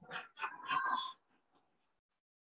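A brief, faint human vocal reaction, lasting about a second, right after a pointed question.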